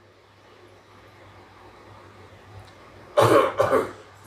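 A man coughs twice in quick succession close to a microphone, about three seconds in. Before the coughs there is a pause with only a low steady hum.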